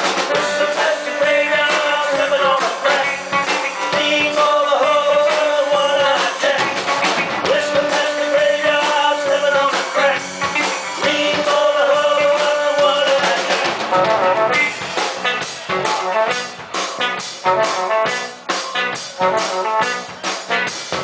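Live blues-rock band playing an instrumental break on electric guitar, electric bass and drum kit. A lead line holds long, wavering notes over the beat for most of the passage, then it thins out near the end to choppier drum hits and a lower level.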